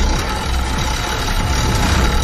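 Background music over a steady low mechanical rumble.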